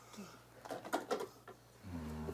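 Quiet kitchen handling sounds: a few soft clicks and rustles, about half a second to a second in, as food and dishes are handled at the counter, over a low steady room hum.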